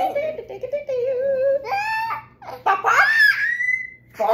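A toddler laughing and squealing while being tickled, with a long high squeal that rises in pitch near the end.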